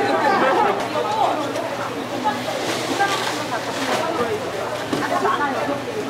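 Background chatter of voices with no clear words, over a steady low hum, with a brief hiss about three seconds in.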